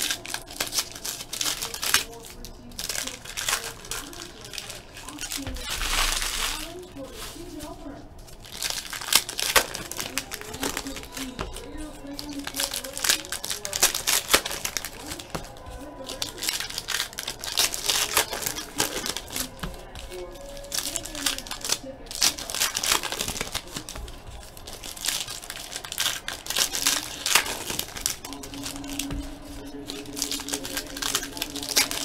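Trading-card pack wrappers crinkling and rustling as packs are torn open by hand and the cards inside are handled, in an irregular run of crackles.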